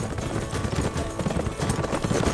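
Hoofbeats of a ridden horse on a leaf-covered forest path, a quick run of thuds, with background music.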